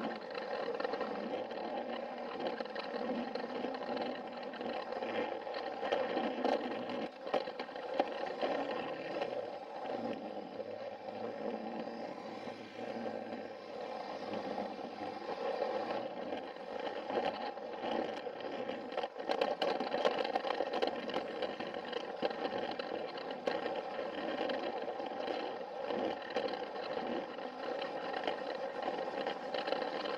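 Battery-powered Plarail toy train's small electric motor and plastic gearbox whining steadily as it runs along plastic track, with occasional sharp clicks.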